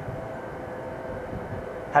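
A steady background drone: a low rumble with faint steady tones over it, unchanging, with no distinct events.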